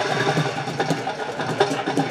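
Fast, continuous drumming with frequent sharp strokes over a steady low drone, mixed with crowd noise.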